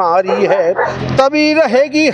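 A man's voice singing a line of Hindi verse in a chanted recitation style, with gliding notes and then a long held note near the end.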